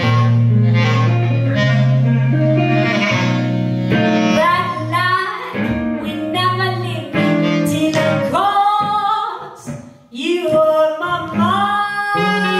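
Blues song played by a trio of female voice, clarinet and hollow-body electric guitar, with the voice singing over the instruments. The music drops away briefly about ten seconds in, then picks up again.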